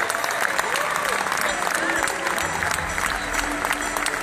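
Large audience applauding, with a few scattered voices calling out. Low music comes in underneath about halfway through.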